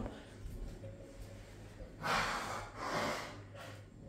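Two short breathy rushes of air, like a person breathing out and in close to the microphone, about halfway through, over a faint low steady hum.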